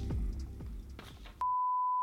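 Music dies away, then about one and a half seconds in a steady, single-pitch test-pattern beep starts abruptly and holds, the kind of tone that goes with TV colour bars.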